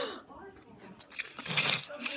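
A girl's voice trails off on an "oh" at the start. About a second and a half in comes a short, noisy burst of rustling and scuffing as the blanket ride slides and bumps across the tiled floor.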